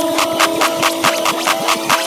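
Build-up in an electronic dance track from a dubstep mix: a rapid drum roll that speeds up, under held synth tones that fade while other synth lines slide up and down in pitch.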